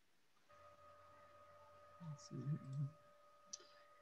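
A faint steady electronic tone over a video-call line, with a brief low murmur of a voice about halfway through and a small click near the end.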